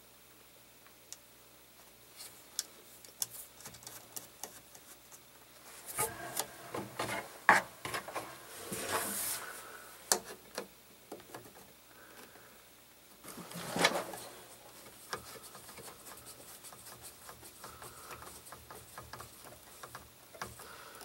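Small metal fasteners being fitted by hand: scattered light clicks and rubbing as screws and nuts go through a steel mounting plate, with two louder stretches of rubbing and clatter about six and fourteen seconds in, the sharpest click near seven and a half seconds.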